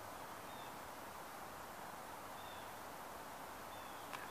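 Quiet woodland ambience: a faint steady hiss with a few faint, short, high chirps from birds spaced about a second or two apart.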